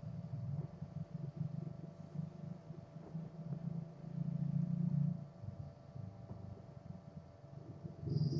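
Low, uneven rumble from the soundtrack of an animated short, swelling and fading, with a lull about five seconds in, over a faint steady hum.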